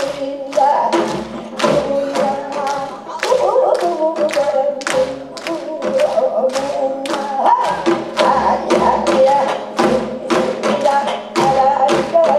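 Gayageum byeongchang: two women singing while plucking their own gayageum, the Korean long zither, with quick plucked string notes under the voices. Dull low thumps come in at irregular intervals.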